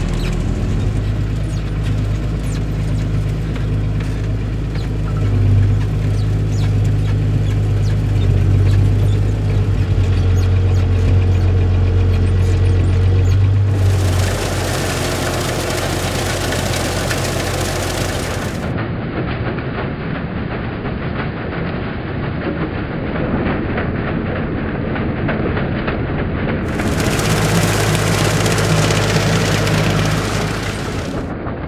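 Massey Ferguson 3085 tractor engine running steadily under load while pulling a rotary tedder, a constant drone heard from inside the cab for about the first half. It then cuts to field level, where the tedder's spinning rotors and tines tossing grass add a rushing noise, and the engine drone comes back louder near the end.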